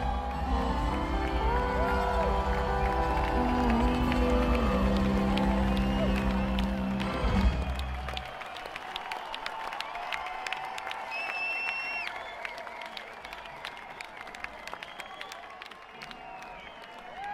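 A live rock band with fiddle plays the closing bars of a song, ending on a final hit about halfway through, then the audience applauds, cheers and whistles.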